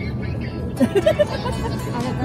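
Steady low road and engine rumble inside a moving car's cabin, with background music and a voice coming in over it about a second in.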